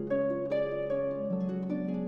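Concert pedal harp played solo: plucked notes follow one another every fraction of a second over lower notes left ringing underneath.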